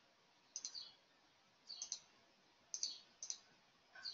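Faint computer mouse clicks: about four quick double clicks, roughly a second apart, as display options are switched off one after another.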